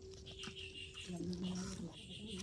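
A person's voice in the background, with a drawn-out, steady-pitched sound lasting almost a second in the second half, over a low steady hum that stops about a second in.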